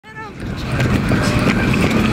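Skateboard wheels rolling on a concrete sidewalk, a steady loud rumble with scattered clicks from the pavement joints, with a short voice at the very start.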